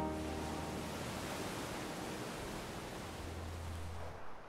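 A steady hiss that starts and stops abruptly, under soft background music whose held notes fade out over the first couple of seconds, with a low hum beneath.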